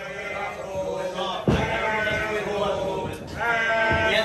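Drawn-out, bleat-like laughter and vocal calls, with two heavy thumps on the wrestling ring, one about a second and a half in and one near the end.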